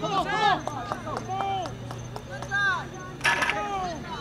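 Spectators shouting and yelling encouragement to the hurdlers, over a steady low hum. There is a short noisy burst a little after three seconds in.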